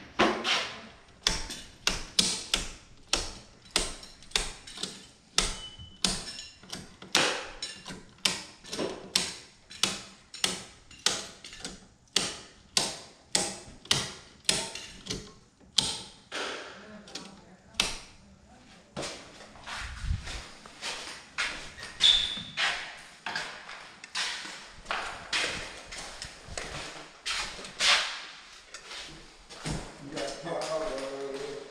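Residential circuit breakers in a load center being flipped one after another. Each makes a sharp snap, roughly one a second, several dozen in all.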